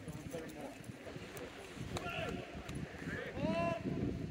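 Rugby players' voices carrying across the field, faint and scattered at first. Near the end comes one long, loud shouted call that rises and then holds its pitch.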